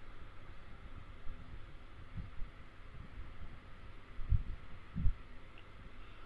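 Quiet background hum and hiss picked up by the microphone, with a few soft low thuds about two, four and five seconds in.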